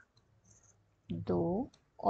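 A few faint clicks in the first second as vertices are marked on an on-screen drawing, then a woman's voice counting "do" (two).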